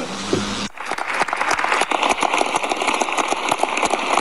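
A crowd of members of Parliament applauding, many hands clapping in a dense, steady patter. There is a brief drop about a second in.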